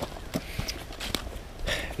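Footsteps of a person walking through woodland, heard as scattered light crunches and clicks over a low rumble.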